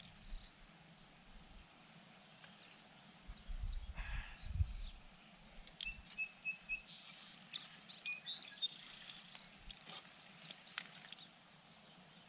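Birds chirping, a run of short high calls and quick sliding notes from about six seconds in, over quiet outdoor ambience with a brief low rumble a little before.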